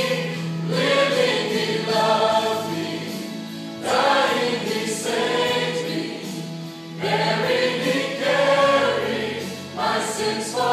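Church choir singing a gospel hymn, phrases swelling and breaking about every three seconds over a long held low note.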